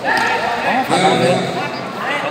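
Several voices calling and talking over one another in a large echoing sports hall, with dull thumps of a sparring bout: kicks landing on padded body protectors and feet on the mat.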